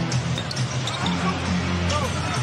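A basketball being dribbled on a hardwood court during live play, with arena music of low held notes playing through the PA over the game noise.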